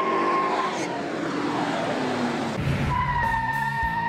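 1970 Plymouth Hemi 'Cuda's 426 Hemi V8 running as the car drives off, its note falling, then rising again with a low rumble around the middle. A steady high tone sounds over it near the start and again from about three seconds in.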